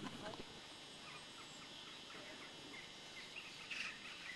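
Quiet outdoor ambience with a few faint short chirps, and a brief louder sound just before the end.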